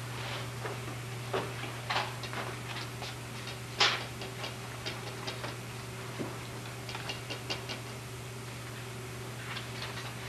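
Small scattered clicks, taps and rustles, one louder near four seconds in, over a steady low electrical hum.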